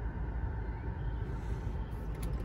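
Steady low hum inside a stationary car's cabin.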